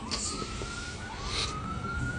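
Emergency-vehicle siren sounding: three rising sweeps, each climbing and then levelling off, a bit over a second apart.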